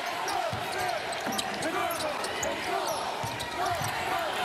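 Basketball sneakers squeaking repeatedly on a hardwood court, with a ball being dribbled and arena crowd noise behind.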